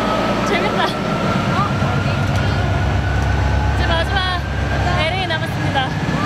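Muffled concert sound from the stage's sound system heard backstage: a loud low rumble that swells in the middle, with a thin high tone rising slowly throughout, under brief chatter and laughter.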